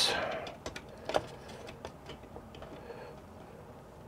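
MSI GeForce graphics card being lined up and pushed back into a motherboard's PCIe slot: a brief scrape at the start, then a few faint clicks and taps as it is worked into place.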